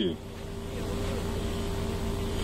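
A motor running steadily: a low rumble with a constant hum tone that grows a little louder in the first second, then holds level.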